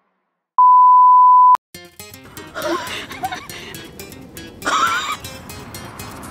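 A loud, steady single-pitch electronic beep about a second long, cut off with a click. It is followed by background music with a busy beat.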